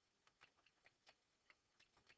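Faint computer keyboard keystrokes: a run of irregularly spaced clicks as a short phrase is typed.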